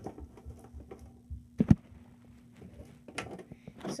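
A few sharp knocks and clicks from objects being handled, the loudest a quick pair about a second and a half in, over a faint steady low hum.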